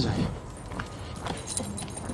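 Light metallic jingling and clicking from dog collar tags and metal leash clips as two leashed dogs walk.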